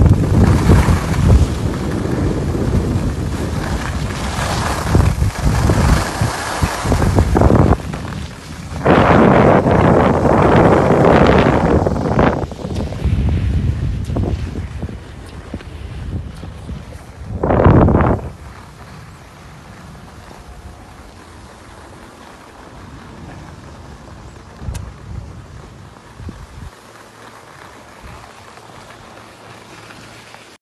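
Wind rushing over the microphone of a skier going downhill at speed, with the hiss of skis on packed snow; there are two loud surges in the middle. About two-thirds of the way through, it drops to a much quieter steady hiss as the skier slows to a stop.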